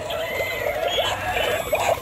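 Animated LED skeleton piranha Halloween toy playing its bubbling sound effect through a small speaker: a fast run of short squeaky blips.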